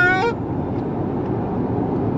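Steady road and wind noise inside the cabin of a Hyundai Ioniq 5 electric car on the move, with no engine note. A man's short laugh ends about a third of a second in.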